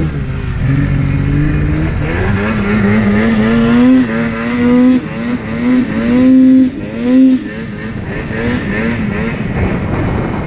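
Polaris RMK Axys 800 two-stroke snowmobile engine pulling hard through deep powder, the throttle worked on and off. The revs climb about two seconds in, then rise and fall in a string of blips, with the loudest surges around four seconds and from six to seven seconds in, and quicker short blips near the end.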